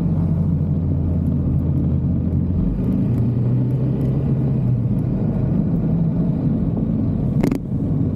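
Yamaha XMAX scooter engine running steadily at cruising speed, heard from the rider's seat behind the windscreen, with road and wind noise. The engine note shifts slightly about a third of the way in, and a short rush of noise comes near the end.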